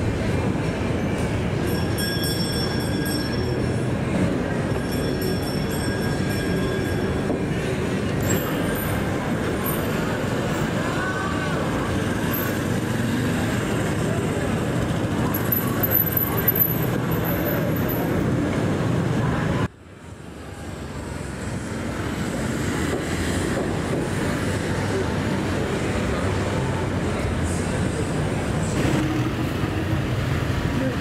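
Steady city traffic noise. About two-thirds of the way through it drops away suddenly, then fades back up over a couple of seconds.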